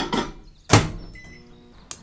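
Microwave oven door swung shut with a single loud thunk about three-quarters of a second in. A short, faint ringing follows.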